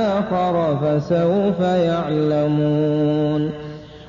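A single male voice reciting the Quran in Arabic in melodic chant, with ornamented sliding notes. The verse closes on a long held note that fades away shortly before the end.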